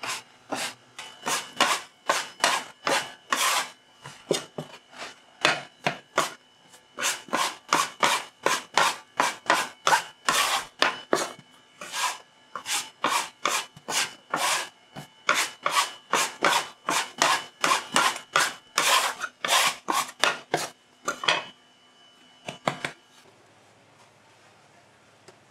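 Rhythmic scraping and rubbing strokes, about two to three a second, as a metal dough scraper and hands work dough across a flour-dusted worktable. The strokes thin out and stop shortly before the end.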